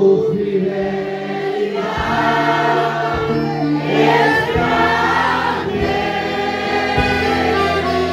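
Church worship music: several voices singing a slow hymn together over sustained instrumental chords that change every second or so.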